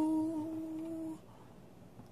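A man's held sung or hummed note, wavering slightly in pitch, fades out and stops about a second in, leaving near silence.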